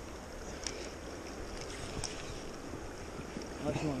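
Steady rush of a flowing river, with wind on the microphone and a couple of faint clicks.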